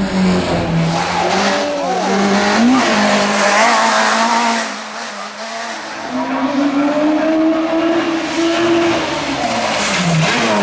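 Peugeot 106 hillclimb car's four-cylinder petrol engine run hard, its note dropping and climbing through lifts and gear changes, with tyres squealing a few seconds in. After a dip in loudness around the middle, the engine note rises steadily as the car accelerates uphill, then falls away near the end as it slows for a hairpin.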